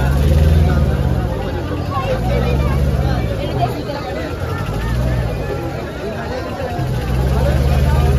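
Dense crowd babble, many voices talking and calling at once, with a low rumble that swells and fades about every two seconds.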